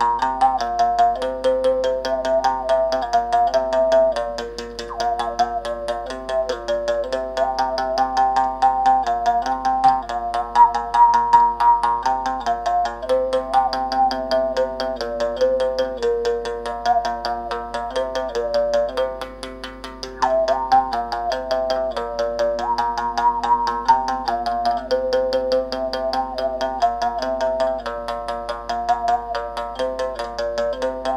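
Moungongo, a Gabonese mouth bow, played solo: the string is struck in a quick, even rhythm over a steady low drone, while the player's mouth picks out a shifting melody from the string's overtones.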